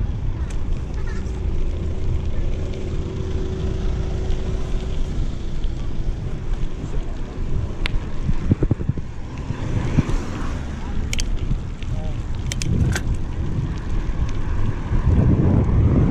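Wind buffeting the microphone and the low rumble of a mountain bike's tyres rolling on a gravel road, with a few sharp clicks in the second half.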